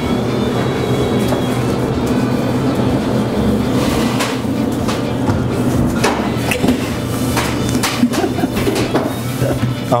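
Background music with steady sustained tones, with a few short knocks over it.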